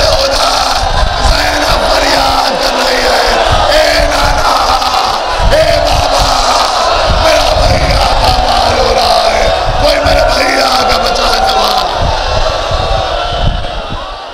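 A preacher crying out in lament into the microphones while a crowd of mourners wails and weeps aloud, many voices overlapping: the grief that follows the narration of Husain's martyrdom.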